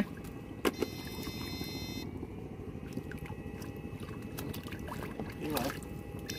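Steady low mechanical drone from a small electrofishing boat's running machinery. Two faint clicks come just under a second in, and a thin high electronic whine sounds from then until about two seconds in.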